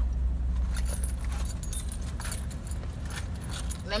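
Keys and small metal items jingling and clicking as they are handled with a wallet, over a steady low hum inside the car.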